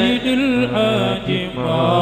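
Male voices chanting an Islamic religious song (xassida), a wavering melodic line sung over held lower notes.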